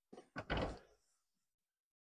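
A faint click, then a single short, dull thud about half a second in, as a man lets go of the steering wheel and sits back in the van's driver's seat.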